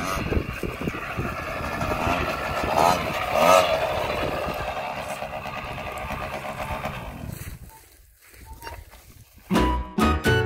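Small 50cc mini trials motorcycle engine running as it is ridden, revving up briefly about three seconds in, then fading out about eight seconds in. Guitar music starts near the end.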